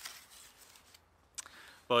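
Near silence in a pause between a man's sentences: faint background hiss, a small click about one and a half seconds in, and his voice starting again at the very end.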